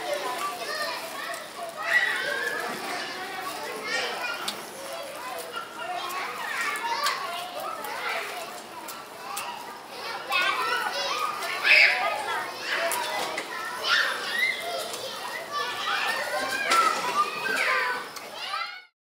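Children playing, with several young voices talking and calling out over one another. There are louder shouts about two seconds in and again around twelve seconds in.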